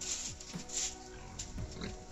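Music playing, with pigs grunting in short low bursts and short scraping noises.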